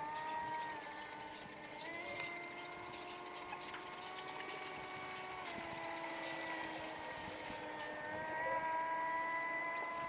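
Outboard motor of an RNLI inflatable inshore lifeboat running at speed, heard from a distance, a steady whine whose pitch drops and rises a few times. It grows louder near the end.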